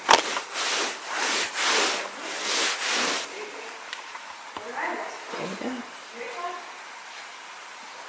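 Four bursts of hissing, rustling noise in the first three seconds. After that it is much quieter, with a faint voice.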